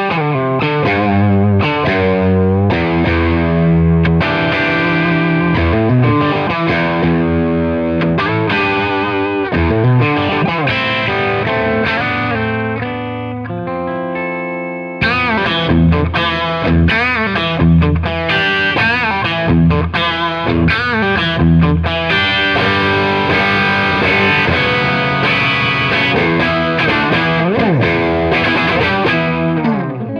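Standard Heritage H-150 electric guitar played with a driven tone through a Bad Cat Hot Cat amp head and a mic'd Marshall 4x12 cabinet: lead lines with many string bends. The playing eases into a softer held note, then jumps suddenly back to full level about halfway through.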